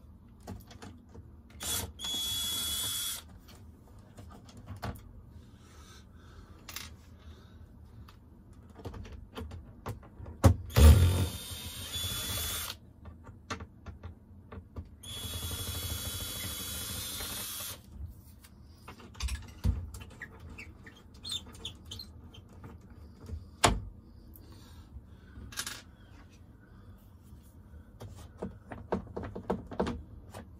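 A power drill runs in three short bursts, the last two each two to three seconds long, with a steady whine in the motor. Scattered knocks and clicks of hand work fall between the bursts, and a heavy knock just before the second burst is the loudest sound.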